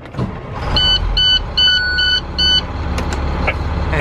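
School bus engine cranking and catching about half a second in, then running at idle, while the dashboard chime sounds a run of five high beeps in the first few seconds.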